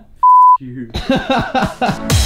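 Censor bleep: a single loud, steady, pure tone lasting about a third of a second, dropped in over a spoken word, followed by a man talking.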